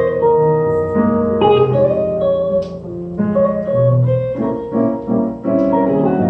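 Live jazz from a piano-and-guitar duo, with the piano's chords and melody most prominent.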